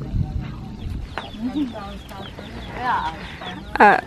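Domestic chickens clucking in short, scattered calls, with low voices in the background.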